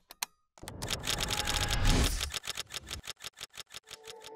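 Camera shutter clicking in a long burst, rapid at first and slowing to a few clicks a second near the end, over a low rumbling swell that rises and fades in the middle.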